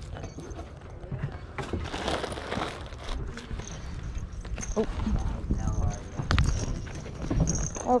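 Plush toys with paper tags being gathered and carried close to a body-worn microphone: rustling and rubbing, with scattered knocks and a sharp click about six seconds in. Faint voices come through at times.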